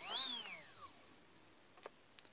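Small brushless outrunner motor driven by an ESC, whining up in pitch and then spinning down to a stop about a second in. It is answering the transmitter's throttle stick, which shows the throttle signal reaching the ESC through the module.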